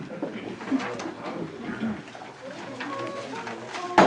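A pause between carols: low, murmuring voices of a small group in a small room, with a faint held note near the end.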